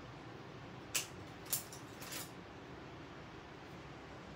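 Three short, light clicks of painting tools handled on a worktable, about a second in and roughly half a second apart, over quiet room tone.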